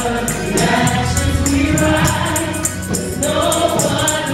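Gospel praise team of several singers singing together into microphones over musical accompaniment, with a steady high percussion tick about four times a second keeping the beat.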